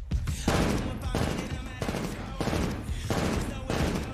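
Rapid rifle fire from an AR-style carbine, in about six quick bursts with short gaps between them.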